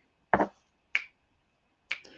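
Three short, sharp clicks from a person, the first the loudest, with near silence between them.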